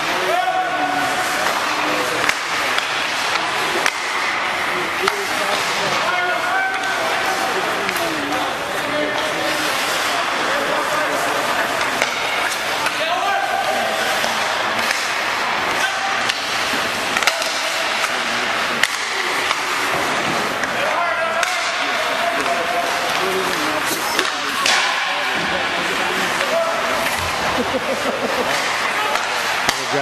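Ice rink practice sounds: skates scraping on the ice, frequent sharp knocks of sticks and pucks, and indistinct voices of players and coaches calling out.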